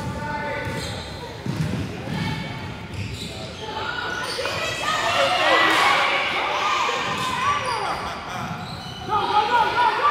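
Basketball dribbled on a hardwood gym floor, its thumps heard in the first few seconds, then overlapping shouts from players and spectators grow louder as the play develops in a large gym hall.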